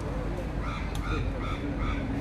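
A bird calling in a quick run of about five short, evenly spaced calls about half a second in, over low crowd chatter.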